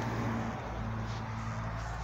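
A low, steady motor hum that stops near the end.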